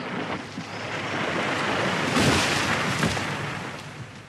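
A large felled tree coming down: a rising rush of branches and foliage that swells to a crackling crash about two seconds in, then dies away.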